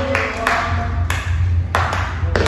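A few people clapping: several sharp, scattered hand claps, while held notes of song or music fade out in the first half second.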